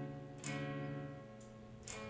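Clean electric guitar on a Wilkinson Alnico V neck humbucker, played through a cabinet impulse response: a note dies away, then two soft plucked notes follow about a second and a half apart. All of it is faint, almost gone in the middle, as the volume knob is turned down to test the newly wired volume pot.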